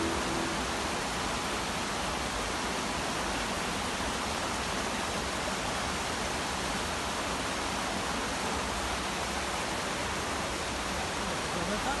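Small waterfall pouring into a rocky pool: a steady, even rush of water.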